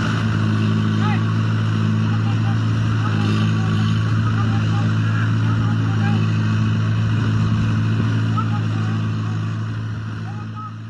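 Tractor engine running at a steady, unchanging pitch, a low even hum, with the tractor reared up on its rear wheels and bogged in mud. Faint voices call out over it now and then.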